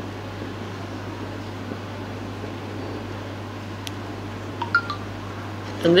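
Steady room tone with a constant low hum, and a few faint small clicks near the end.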